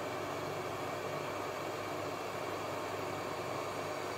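Hot air rework gun blowing a steady hiss of air onto a motherboard to reflow the solder of an EEPROM chip.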